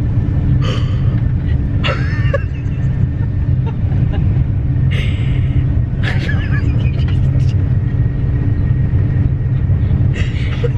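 Steady low rumble and hum of a moving Eurostar train, heard from inside the passenger carriage. Short bursts of women's laughter come about a second and two seconds in, and again around five and six seconds in.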